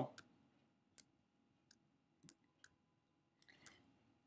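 About five faint, sparse clicks from a computer keyboard and mouse in near silence.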